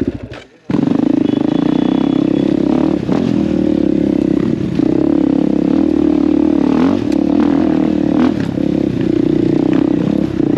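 Enduro motorcycle engine running hard on a dirt trail, its pitch wavering with the throttle, with occasional knocks from the bike over rough ground. The sound drops out briefly about half a second in.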